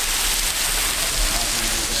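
A thin waterfall dropping from a rock overhang and splashing onto the rocks below: a steady, rain-like hiss of falling water.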